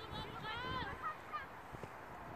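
A high-pitched young female voice shouting: one drawn-out call that rises and then falls in pitch about half a second in.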